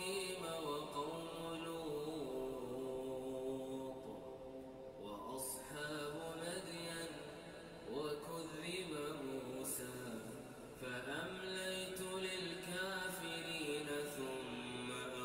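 A man reciting the Qur'an in slow melodic chant (tajwid): long held notes that bend and ornament, in phrases with short pauses between them.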